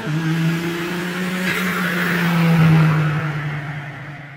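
Intro sound effect of a car engine: one steady low engine note with a rushing whoosh, swelling to its loudest about three seconds in, then fading.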